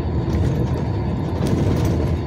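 Steady engine and road rumble heard inside the cab of a moving truck.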